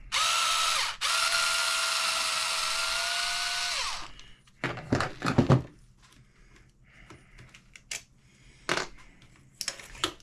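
Cordless electric screwdriver spinning out a bolt from an RC truck's rear end. The motor whines steadily for about four seconds, with a brief stop about a second in and a slight rise in pitch as it runs. A short rattle comes about five seconds in, followed by a few light clicks.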